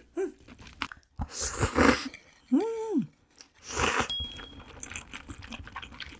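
A person eating and slurping with a close microphone. A noisy slurp comes about a second in, then a hummed "mm", then a louder sip from a wooden bowl around four seconds in. Wet chewing and lip-smacking clicks follow.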